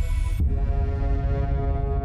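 Station ident music for the logo animation: a deep throbbing pulse under several held tones, with a sudden change in the sound about half a second in.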